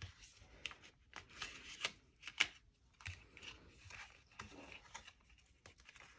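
Faint rustling and crinkling of cardstock as hands fold and press the flaps of a small paper box, with scattered small clicks and scrapes of paper on paper.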